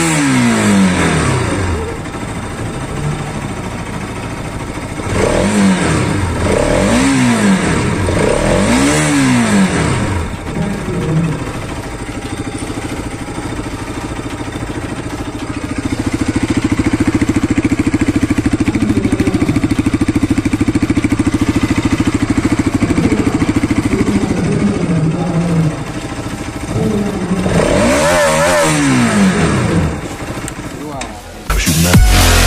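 Bajaj Pulsar RS 200's single-cylinder engine revved in neutral: sharp blips that rise high and fall back, several in the first ten seconds and again near the end, with about ten seconds of steady, held running in between.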